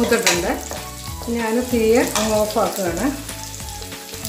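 Cashews and raisins sizzling as they fry in a nonstick pan, stirred with a spatula that scrapes against the pan, with a sharp scrape or knock just after the start. Background music with a melodic line plays over it.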